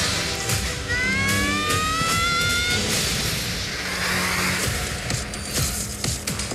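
Film trailer soundtrack: dramatic music mixed with sound effects, including a rising whine from about one to three seconds in.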